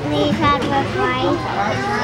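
Several children's voices chattering and calling out over one another, with a steady low hum underneath.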